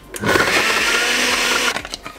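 Rohnson Heavy Duty countertop blender running in a short burst of about a second and a half, crushing frozen banana chunks with almond milk, then cut off sharply.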